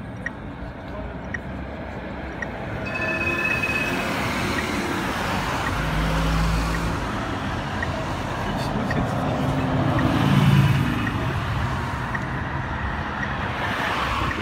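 Street traffic and a passing tram: a steady rolling rumble that swells about three seconds in, with low humming tones. It is loudest a little past the ten-second mark.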